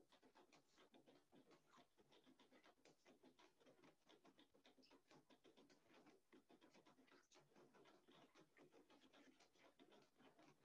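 Near silence, with only a faint, rapid and irregular patter of small taps.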